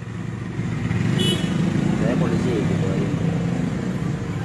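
Road traffic: a motor vehicle engine running close by, a low steady rumble that swells a little in the middle, with faint voices under it.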